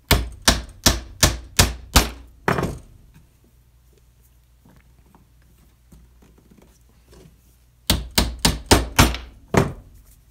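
Claw hammer driving glued walnut dowels into drilled holes in a maple segment set on a wooden block: a run of about seven quick blows at roughly three a second, a pause of several seconds, then another run of about six blows.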